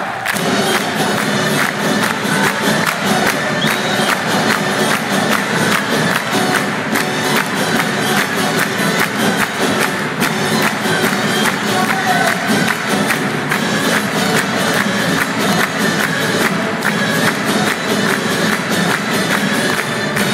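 Live acoustic folk band playing a song with a steady beat, the crowd clapping along and cheering.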